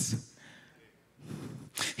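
A woman's voice finishes a word into a handheld microphone, then after a pause of about a second a sharp, loud breath is drawn close to the microphone just before she speaks again.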